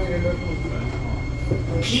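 SMRT C751B metro train heard from inside the carriage as it slows into a station: a steady low rumble with a faint whine. A recorded announcement starts just before the end.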